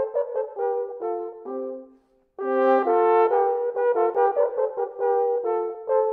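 A pair of mid-18th-century Baroque natural horns by Hofmaster playing a duet in two parts, in short detached notes. The playing breaks off for a moment about two seconds in, then starts again.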